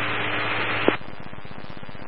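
Police scanner radio hiss between transmissions: an even static for about a second, a short click, then a quieter, buzzy hiss until the next voice comes on.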